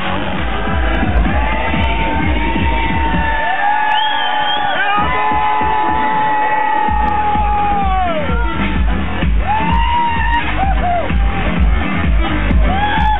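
Loud electro dance music from a live DJ set playing over a big PA, heard from within the crowd. The pumping bass beat drops out about three seconds in, leaving long held notes that glide in pitch, then kicks back in about seven seconds in.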